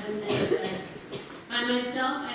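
A single cough near the start, amid a woman's voice reading aloud in a hall.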